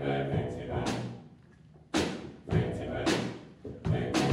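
Mixed choir singing with drum kit accompaniment: sung chords throughout, punctuated by heavy drum hits about halfway through, a second later, and again near the end.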